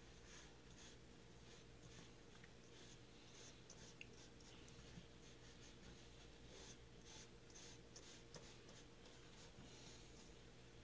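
Faint, soft swishes of a watercolour brush stroking across paper, many short strokes one after another, over a low steady hum.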